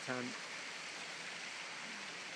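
Steady hiss of water at the campsite, even and unbroken, after a spoken word at the very start.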